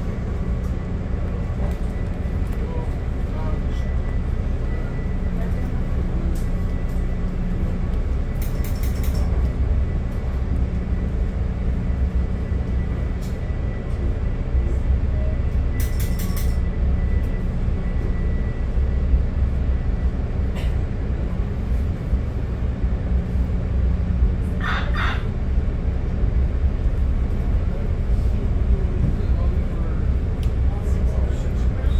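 Interior of a Budd gallery commuter car rolling along the track: a steady low rumble of wheels and running gear, with a few brief sharp clicks over it.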